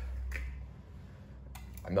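Light clicks as the lid and plunger are set onto a glass French press, over a low steady hum that drops away about half a second in.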